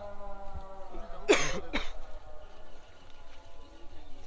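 A man coughing twice in quick succession, about a second and a half in, over a steady background drone.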